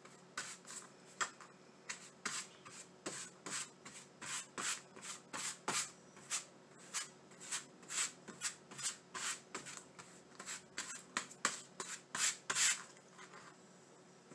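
Wide paintbrush rubbing Mod Podge across a stretched canvas in quick back-and-forth strokes, about two to three a second, stopping shortly before the end.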